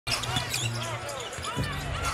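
Basketball game sound from the court: a ball being dribbled on the hardwood and sneakers squeaking in short chirps, over a steady arena background.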